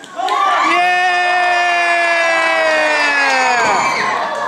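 A spectator's long held shout over crowd noise: one voice holding a single note for about three and a half seconds, sliding slowly down in pitch before it breaks off.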